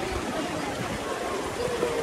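Steady rush of water running down an outdoor water slide's flume, with a faint voice near the end.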